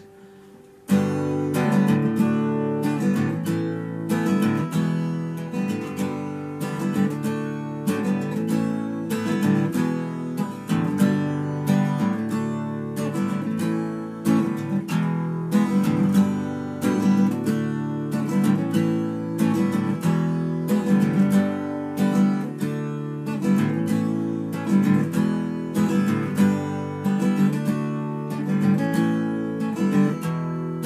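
Acoustic guitar strummed in a repeated riff with a steady, even beat, starting abruptly about a second in.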